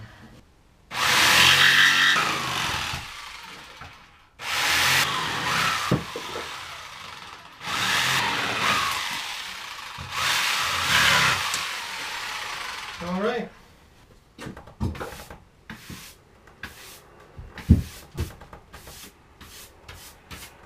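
Handheld power saw cutting a trim along the edge of a marine plywood sheet in three runs, stopping about thirteen seconds in. Then a hand brush sweeping sawdust off the plywood in quick short strokes.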